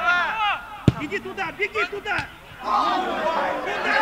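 Footballers calling and shouting to each other on the pitch, with one sharp kick of the ball about a second in, as the corner is struck.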